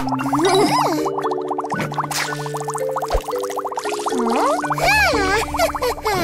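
Cartoon background music with a bubbling cauldron sound effect, a rapid run of little pops and gurgles in the middle.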